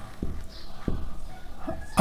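Marker writing on a whiteboard: faint strokes with a few soft taps, over a low room hum.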